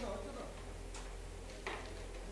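A few light clicks of a carrom striker and wooden pieces on a carrom board, one at the start and a stronger one near the end, over a steady low hum.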